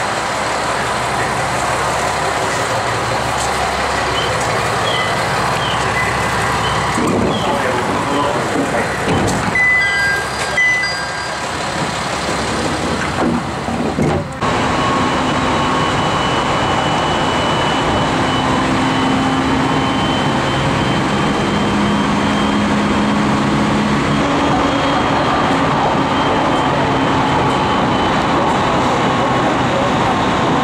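Station platform sounds beside a standing JR East 701-series electric train, with short electronic beeps about ten seconds in. From about halfway on comes the steady running noise inside the moving train, wheels on rail with a faint steady motor hum.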